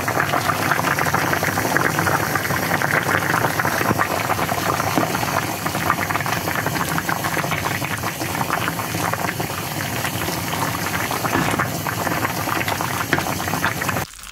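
Pot of Korean seaweed soup (miyeokguk) with clams and shrimp at a boil, bubbles popping in a steady, dense crackle that cuts off suddenly at the end.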